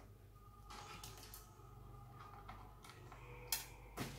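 Faint rustling and light clicks of cables being handled, with one sharper click about three and a half seconds in, over a low steady hum.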